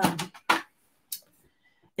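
A couple of short clicks, one about half a second in and a thinner, sharper one about a second in.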